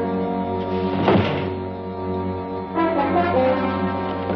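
Dramatic orchestral film score with sustained brass chords, and a sudden thump about a second in.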